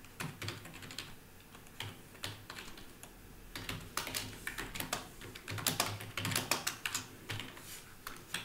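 Typing on a computer keyboard: a few scattered keystrokes at first, then a quicker run of keys through the second half.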